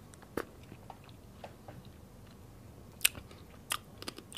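Faint chewing of passion fruit pulp and its seeds, with a few sharp crunchy clicks, one about half a second in and two more near the end.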